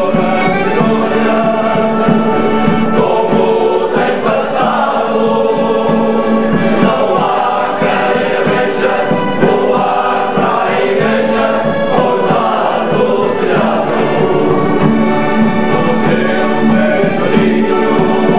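Male folk choir singing a traditional song in parts, accompanied by strummed acoustic guitars and a mandolin.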